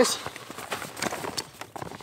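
Rustling and crinkling of a waterproof roll-top pannier's stiff fabric as its top is unclipped and unrolled, with scattered small clicks.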